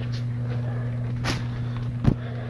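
Steady low hum of greenhouse ventilation fans, with a single short click about a second and a quarter in.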